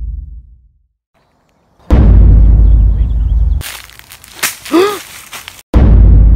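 Trailer-style sound design: deep booming impact hits, one about two seconds in that rings out and fades, and another near the end, with the tail of an earlier boom dying away at the start. Between the last two hits comes a burst of harsh static with a tone that dips and rises.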